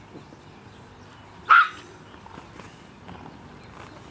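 A small dog barks once, a single short sharp bark about a second and a half in.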